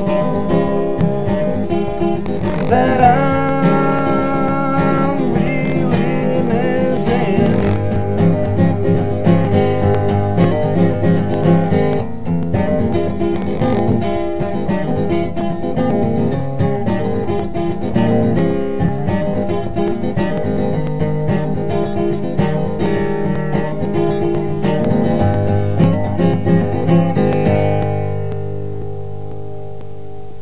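Steel-string acoustic guitar played with the fingers, picking and strumming chords through the song's closing passage. Near the end the playing stops and a final chord is left ringing as it fades.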